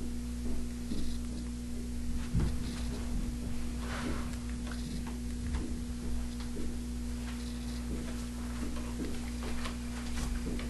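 Steady electrical hum under scattered light clicks and taps as make-up brushes and containers are handled, with one duller knock about two and a half seconds in.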